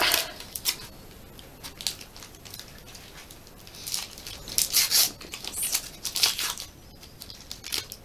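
A Panini sticker packet wrapper being torn open and crinkled by hand: several short crackles of tearing and crumpling wrapper, the loudest about halfway through.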